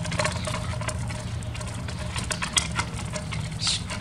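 Irregular crunching and crackling over gravel as a quarter-scale wooden logging arch is pulled along, its spoked wooden wheels rolling and a log dragging beneath the axle, with a steady low rumble underneath.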